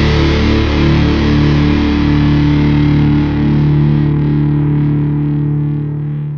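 Hardcore punk recording ending on a held, distorted electric guitar chord ringing out with no drums, its upper range fading over the last couple of seconds.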